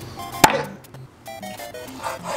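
One sharp chop of a Chinese cleaver through a chicken thigh onto a wooden chopping board, about half a second in, with faint background music under it.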